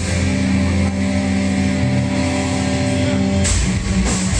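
Live rock band's distorted electric guitars holding one sustained, droning chord with no drums; near the end the drums and full band come back in.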